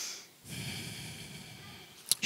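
Breathing close to a headset microphone. A hissing breath fades out at the start, and a second, longer noisy breath follows from about half a second in.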